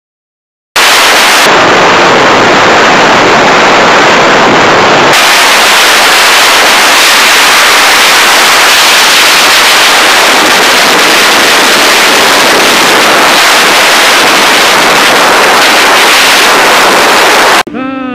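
Steady, distorted wind noise on the camera microphone of a sportbike riding at highway speed, starting abruptly under a second in; no engine note shows through it.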